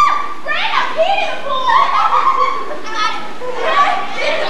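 Girls shouting and squealing at high pitch while playing in a swimming pool, several short calls one after another.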